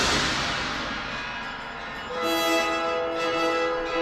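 Opera orchestra playing. A loud crash rings away over the first second, and about two seconds in a sustained chord enters.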